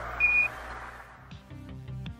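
A single short, high radio beep closing a radio transmission, trailed by fading radio hiss. About a second and a half in, background music starts with an even beat.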